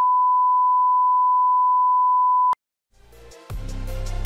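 A steady, single-pitched test-card tone that cuts off sharply about two and a half seconds in. After a brief silence, electronic music with a heavy beat fades in near the end.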